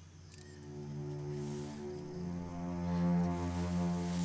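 Background music of sustained held chords, swelling over the first second and moving to a new chord about halfway through.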